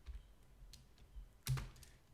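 Computer keyboard being typed on: a few faint, scattered keystrokes, the loudest about one and a half seconds in.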